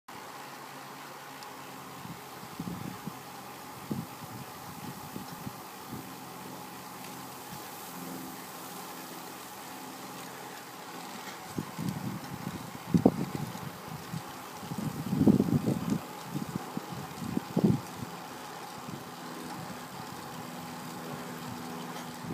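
Wind buffeting a phone microphone in irregular low gusts, strongest in a few blasts in the second half, over a steady faint background hum.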